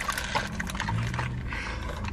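Paper burger wrapper and paper fry containers rustling and crinkling close to the microphone, with chewing: a run of small irregular crackles and clicks.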